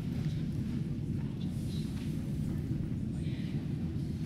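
Steady low rumble of a crowded school gymnasium, with faint murmuring voices.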